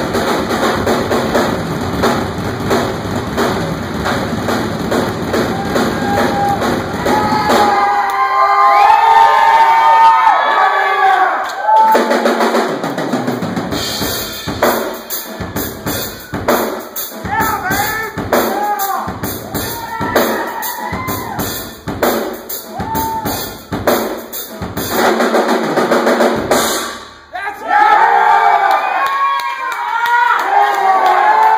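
Live drum kit solo. It opens with a fast, dense run of drumming for about eight seconds, then breaks into separate hits and fills with short gaps between them. Shouts from the audience sound over the drumming in the middle, and cheering rises near the end.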